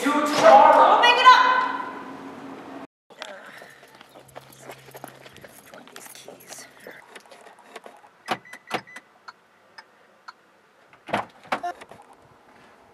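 A woman's voice for the first two seconds, then, after a cut, a bunch of keys jangling and clicking in the hands. A few sharper clicks come later, with the loudest near the end.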